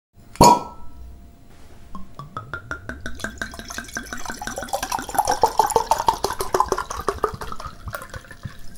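Short intro jingle: one bright, ringing strike about half a second in, then a quick run of short notes that rises and falls in pitch for several seconds.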